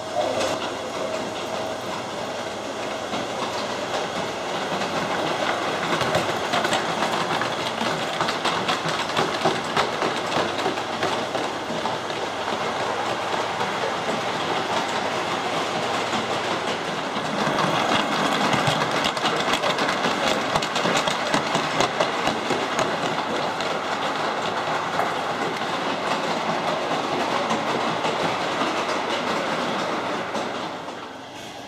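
Model train running round a layout's track: a steady rolling clatter of small wheels over the rails and rail joints, thick with fast clicks.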